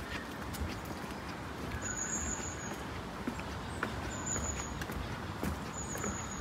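Footsteps on the plank deck of a wooden footbridge, a few faint, irregular knocks over a steady outdoor background hiss.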